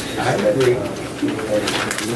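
Low, indistinct men's voices talking and murmuring over one another in a small room.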